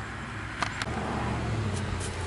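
Low steady background rumble that swells slightly through the middle, with two light clicks a little over half a second in.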